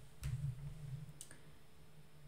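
Two light clicks about a second apart, the first louder and followed by a brief low rumble, the second fainter and thinner: the kind of click made by a mouse button or a stylus tapping a tablet while handwriting on screen.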